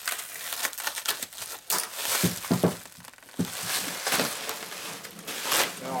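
Plastic packing wrap rustling and crinkling in irregular bursts as it is handled and pulled away from a metal engine case.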